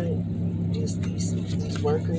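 Steady low hum of a car's engine running, heard inside the cabin, with brief snatches of a voice near the middle and at the end.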